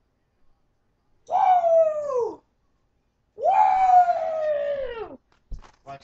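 Two long howls, each holding a steady pitch and then sliding down at the end, followed by a short low thump and a few clicks near the end.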